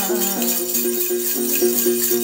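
Đàn tính, the Tày long-necked gourd lute, plucked in a quick, even pattern that alternates between two main notes, with small shaken bells jingling in time.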